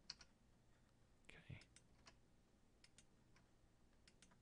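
Near silence with a few faint, scattered clicks of a computer mouse and keyboard.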